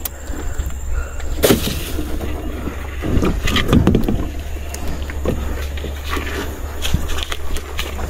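A gill net being pulled in and handled by hand in an aluminium boat: rustling and scattered knocks, with one sharp click about a second and a half in, over a steady low rumble.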